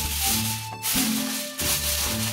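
Aluminium foil crinkling and rustling as it is spread and pressed over a baking dish, with a short break a little under a second in. Background music plays underneath.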